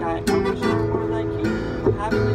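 Acoustic guitar being strummed, chords ringing between strokes, with a sharp strum just after the start and another near the end.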